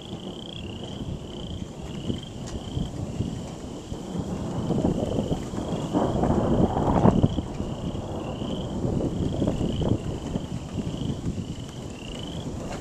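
Rolling thunder rumbling continuously, swelling to its loudest about six to seven seconds in, while frogs keep up a regular series of short rising chirps, about one and a half a second.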